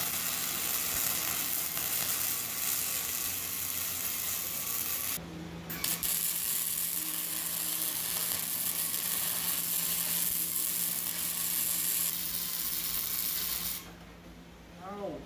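Hobart Handler 125 wire-feed welder running flux-core wire, its arc crackling and sizzling steadily as a bead is laid on steel. The arc breaks off for about half a second about five seconds in, then restarts for a second long bead.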